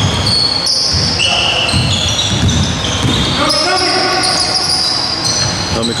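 Basketball being dribbled on a hardwood gym floor, with sneakers squeaking in short high chirps as players move. A voice calls out about three and a half seconds in.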